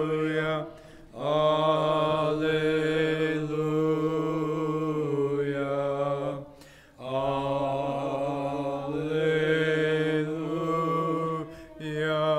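Orthodox communion hymn chanted by a single male voice: long held notes mostly on one reciting pitch, dipping lower for a phrase near the middle, with three short breaths between phrases.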